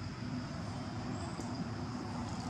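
Steady low rumble of distant motor traffic, with a faint steady high whine above it.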